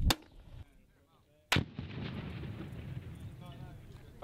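40 mm grenade launcher fire: two sharp blasts about a second and a half apart, the second trailing off into a long rumble.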